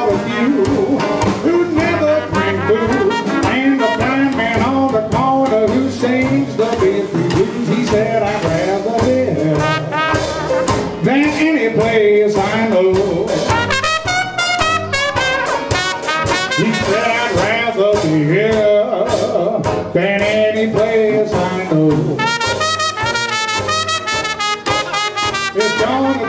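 Traditional New Orleans jazz band playing an instrumental passage of a blues: cornet leading with a wavering tone over reeds, piano, banjo, string bass and drums.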